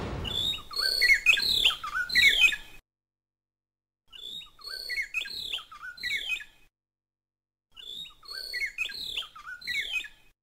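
Small bird chirping and twittering in three near-identical bursts of two to three seconds, with dead silence between them: the same birdsong recording played three times over.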